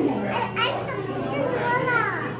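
Indistinct chatter of children's and adults' voices, with a high-pitched child's voice rising and falling near the end, over a steady low hum.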